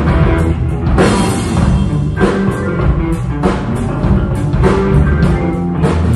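Live progressive rock band playing an instrumental passage: drum kit with regular hits, electric guitars and bass guitar.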